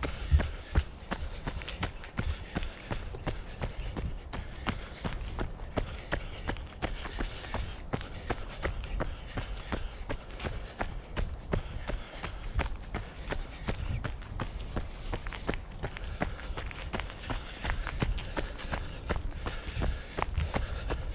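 A runner's footsteps on a leaf-strewn dirt woodland trail, a steady, even running rhythm of short thuds, with a low rumble beneath.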